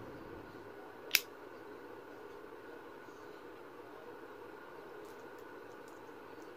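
A single sharp click about a second in, from the small device being handled, over a faint steady background hum, with a few very faint ticks later on.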